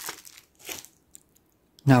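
Thin plastic zip-lock bag crinkling as it is handled and set down, in two short bursts within the first second.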